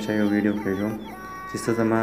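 A man speaking in short phrases of narration, with faint steady background music under it.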